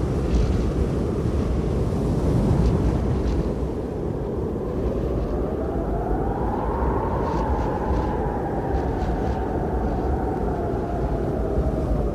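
Steady low rumble with a rushing, wind-like noise, and a whistling tone that climbs over a few seconds about midway and then slowly sinks back.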